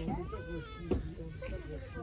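Indistinct voices of other people talking in the background, well below close speech, with one sharp click about halfway through.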